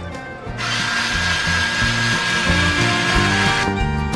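A handheld power cutter runs through fiberglass cloth for about three seconds, a steady whine with a hiss, starting just under a second in and stopping shortly before the end, over background music.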